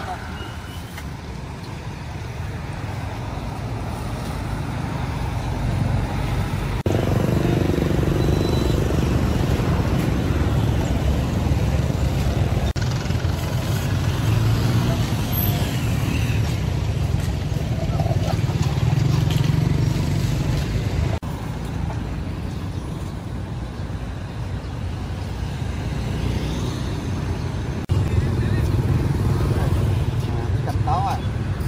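Street traffic: motorbike and car engines running past in a steady low rumble, with voices faintly under it. The sound changes abruptly about 7, 21 and 28 seconds in.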